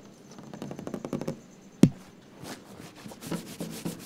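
Metal lever door handle being worked: a quick run of fine rattling clicks, then one sharp latch click just before two seconds in. After that comes a hand rubbing and scratching a woven lace curtain in soft, repeated strokes.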